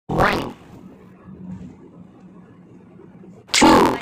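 Two short, loud raspy bursts about three seconds apart, one right at the start and one near the end, with a faint low steady hum between them.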